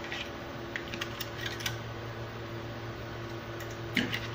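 A few light clicks of a spoon as a large spoonful of yogurt is scooped and dropped into a pot of onion water, with a sharper click near the end. A steady low hum runs underneath.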